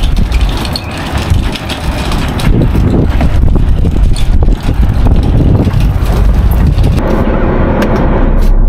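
Strong wind buffeting the microphone, a loud, gusty low rumble with a few scattered knocks. About a second before the end it gives way to a duller, steadier low rumble.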